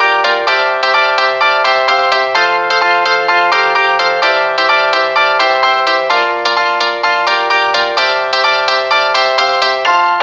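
Background music: a bright, ringtone-like melody of quick pitched notes, about three a second, at an even pace.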